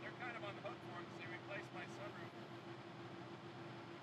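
A man's voice talking faintly at a distance, too low for the words to come through, over a steady low hum.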